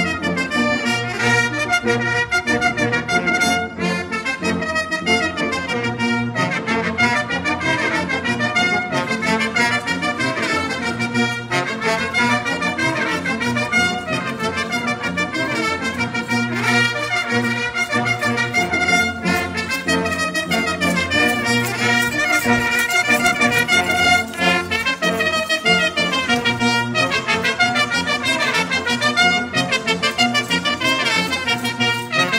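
A Bersaglieri fanfare, a military brass band of trumpets and trombones, playing music continuously.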